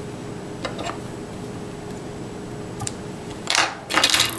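Small fly-tying tools and materials being handled on a bench: a few faint clicks, then a short louder clatter near the end, over a steady low hum.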